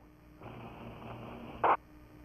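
A fuse blowing: a steady fizzing hiss for just over a second, ending in a short louder burst that cuts off suddenly.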